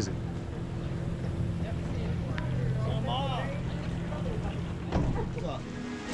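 Outboard motor of a deck boat idling with a steady low hum, with faint voices over it.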